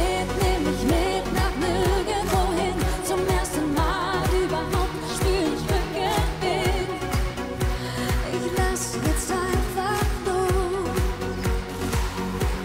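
Pop song performed live: a woman's lead vocal over a steady low beat of about two thumps a second.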